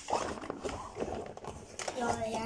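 Toys being rummaged through in a pink backpack with a clear plastic front: rustling of the plastic, with small scattered clicks and knocks of the toys being handled.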